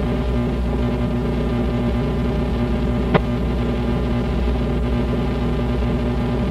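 Steady electrical hum and buzz from the band's idling guitar and bass amplifiers between songs, with a single sharp click about three seconds in.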